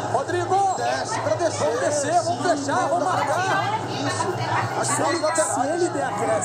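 Several voices talking over one another in a room: overlapping chatter with no one voice standing out.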